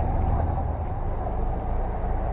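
Steady low rumble of an idling vehicle engine, with a few faint light clicks.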